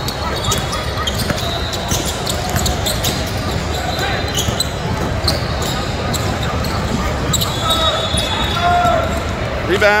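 Basketball game play on a hardwood court in a large, echoing hall: a ball bouncing, repeated sharp knocks and short high squeaks over a steady background of hall noise. Voices call out on and around the court, most clearly late on.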